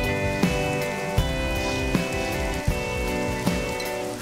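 Steady rain falling, under background music whose sustained notes are struck afresh about every three quarters of a second.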